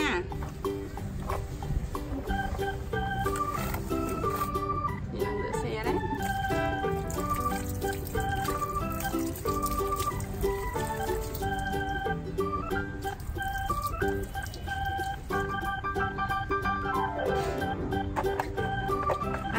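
Background music: an electronic-organ melody of short, steady held notes, with a falling run of notes near the end. Water from a garden hose splashing into a plastic bucket runs faintly beneath it.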